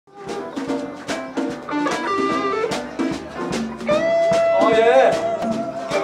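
Live small band playing an up-tempo jump-blues number on upright piano, guitar and drums, with steady drum hits under changing piano and guitar notes and a long held note from about four seconds in.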